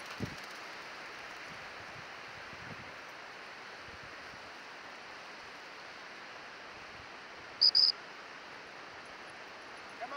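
Steady outdoor hiss of wind and sea. About three quarters of the way through, it is broken by two short, loud, high-pitched pips close together.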